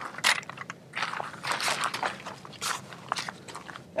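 Irregular clicks and crunchy rustling from handling a Helinox camp chair: its aluminium pole frame set down on gravel and its fabric seat picked up and opened out.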